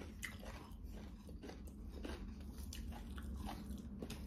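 Close-up chewing of a mouthful of rice and greens, with many soft, irregular mouth clicks, and fingers mixing rice and greens on a plate.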